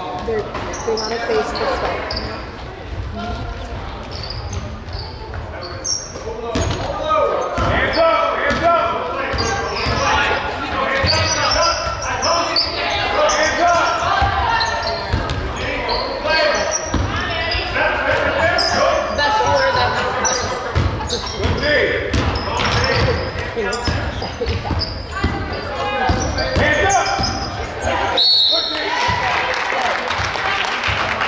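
Basketball game in a gym: a basketball bouncing on the hardwood floor, with sneakers and the indistinct calls of players and spectators echoing in the large hall. A short referee's whistle blast comes near the end.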